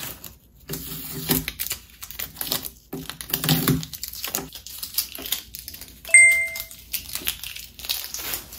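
Paper price-tag stickers being peeled off a cabinet edge and crumpled in the hand, in crackling bursts of peeling and crinkling. A short high beep sounds about six seconds in.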